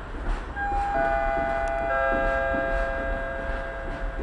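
Station public-address chime: three notes, each lower than the one before, entering in turn about half a second to a second apart and held together until they cut off near the end. It comes over the low noise of an electric multiple unit approaching the platform, and signals a train announcement.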